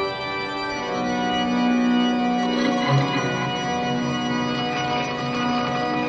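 Frequency Factory Dreamcatcher prototype granular synthesizer playing a sustained, organ-like pad built from a four-second guitar-harmonics sample, reshaped as its granular knobs are turned. The chord of steady tones changes about a second in.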